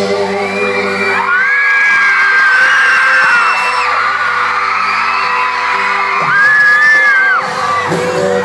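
A live pop concert heard through a phone's microphone: the band's sustained chords run under high-pitched screaming from the crowd. Two long screams stand out, one soon after the start and the loudest near the end.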